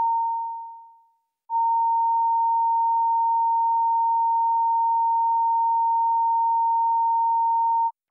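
Electronic audio test tone, a single pure note just under 1 kHz. A short tone at the start fades away within about a second, then a steady tone runs from about a second and a half in and cuts off just before the end. It is the broadcast line-up tone that follows the recorded 'Committee Room 30. Sound.' ident on the idle feed.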